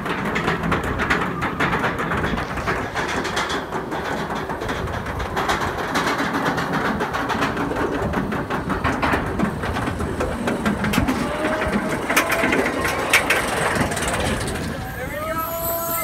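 Roller coaster chain lift hill clattering as a floorless coaster train is hauled up the incline: a steady mechanical rattle of rapid clicks. Near the end, as the train nears the crest, riders start to yell.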